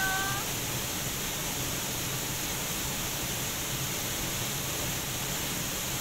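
Steady, even rushing of a waterfall. A short pitched note sounds in the first half second and fades.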